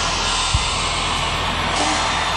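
Live concert sound: a dense wash of crowd noise over the band, with a steady low bass note and one sharp drum hit about half a second in.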